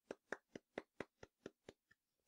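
A soft, slow golf clap: one person's hands patting together lightly, about four faint claps a second, in imitation of tepid applause.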